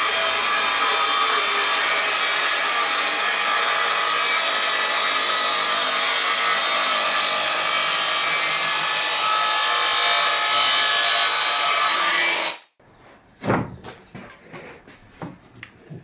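Handheld circular saw ripping a long length of MDF: a steady motor whine and cutting noise for about twelve and a half seconds that then cuts off. After it come a few knocks and clatters as the cut MDF strips are handled.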